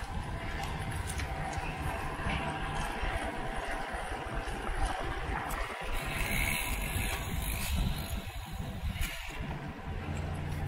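Wind buffeting the microphone of a handheld DJI Osmo Pocket on a moving road bike: a steady, rumbling rush of noise.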